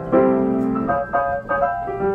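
1925 Steinway XR Duo-Art reproducing grand piano playing itself from a paper roll. A chord is struck at the start and held, then several quicker chords follow in the second half.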